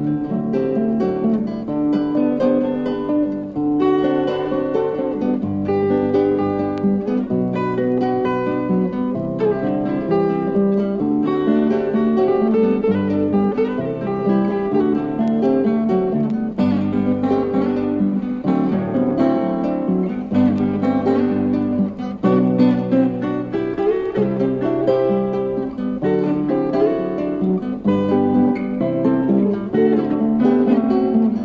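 Acoustic guitar music with no singing: an instrumental break in a folk song, picked guitar notes over bass notes that change every second or so.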